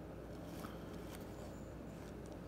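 Quiet room hum with a couple of faint ticks and light rustling as a book is handled and turned.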